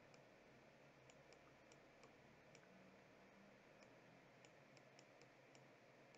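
Near silence: faint room tone with very faint, irregular ticks, a few a second, from writing with a pen on a digital tablet.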